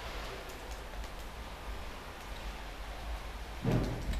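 Steady hiss of rain falling outside, with a low rumble underneath.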